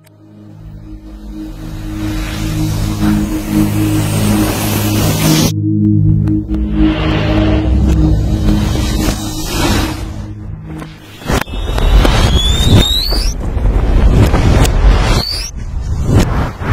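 Distorted animated-logo soundtrack: a sustained low chord fades in under a wash of hiss and holds for about ten seconds, then gives way to a loud, rough rumble with two high squealing pitch glides.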